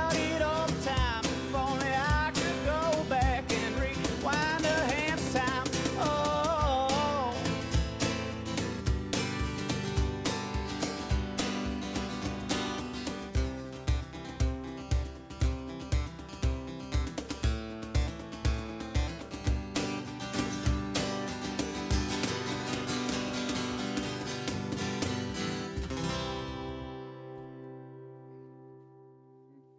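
A country song played on acoustic guitar with percussion. Lead vocal sings for the first several seconds, then an instrumental outro with steady percussion beats follows, ending on a final chord that rings out and fades near the end.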